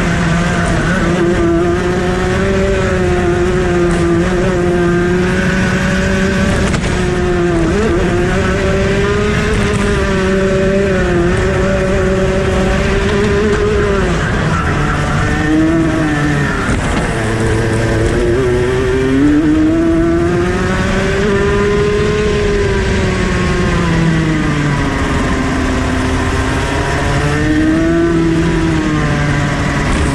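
A racing kart's high-revving two-stroke engine under hard use through a lap, its whine climbing along the straights and falling as it slows for corners. The deepest drop, to low revs, comes about halfway through.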